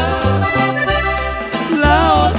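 Norteño band playing an instrumental passage: accordion carries the melody over bass notes that change in steady steps.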